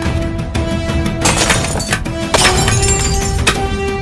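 Dramatic film score with two crashes of picture frames hitting the floor and their glass shattering, the first a little over a second in and the second about a second later.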